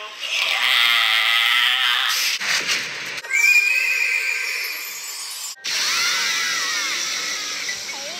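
A sea lion calling with one long, wavering cry. It cuts off suddenly and other clip audio follows: a steady high tone, then looping, warbling whistle-like glides.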